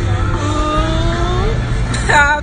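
City street traffic rumble, with a long pitched sound rising slowly over it from about half a second in.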